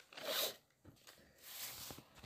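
A person breathing close to the microphone: two short, hissy breaths, one near the start and one near the end.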